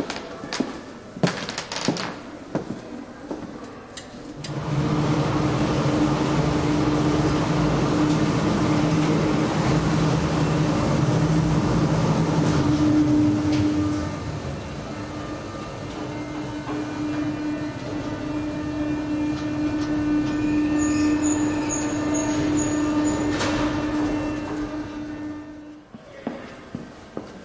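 Footsteps on a hard floor, then a steady mechanical hum with a low drone starts suddenly and runs for about twenty seconds: a motorized cart travelling along its rail track in a glass display case. The hum dips a little about halfway and fades out near the end.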